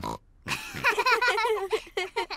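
Cartoon pig characters laughing with pig snorts, one stretch of wavering voiced giggling lasting about a second and a half.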